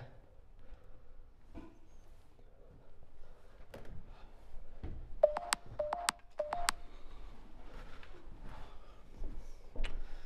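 A small handheld electronic gadget beeping: a quick run of about eight short chirps in three little clusters, a little past halfway. Faint knocks and handling noises are heard around them.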